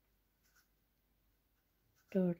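Near silence: room tone, with one faint tick about half a second in.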